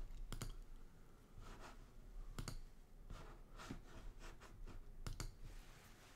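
Several faint, sharp clicks at irregular intervals over quiet room tone.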